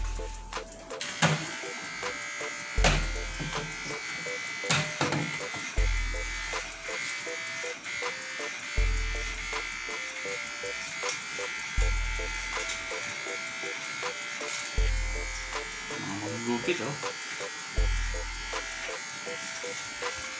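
Electric hair clippers buzzing steadily while cutting hair at the back of a man's head, over background music with a deep bass beat about every three seconds.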